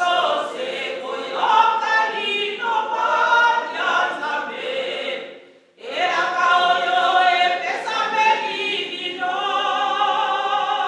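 A woman singing a hymn unaccompanied into a microphone, in long held phrases with a brief pause for breath about halfway through.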